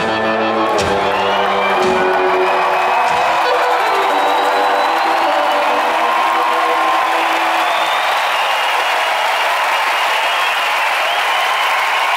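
A live blues-rock band with drums and electric guitars ends a song on a few final hits. The last chord rings out and fades over several seconds while a large crowd cheers, applauds and whistles.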